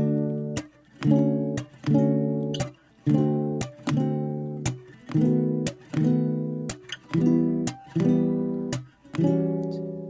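Acoustic guitar strummed in a steady rhythm, a strong chord about once a second with lighter strums between, each ringing and fading. This is the instrumental intro of a song, before the singing comes in.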